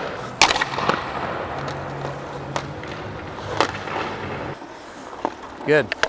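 Goalie's hockey stick striking a puck on ice: a sharp crack about half a second in, then several fainter knocks and skate scrapes on the ice.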